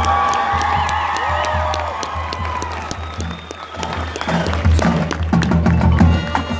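Marching band playing in a field show, with the front ensemble's marimbas and other mallet percussion striking notes, and audience applause and cheering mixed in. The struck notes come thicker over the last two seconds.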